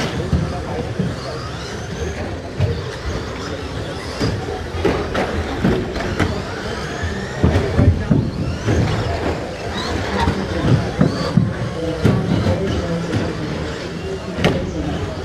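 Electric RC stock trucks racing: high motor whines rising and falling as they accelerate and brake, with scattered sharp clicks and knocks from trucks landing and striking the track boards, over indistinct voices.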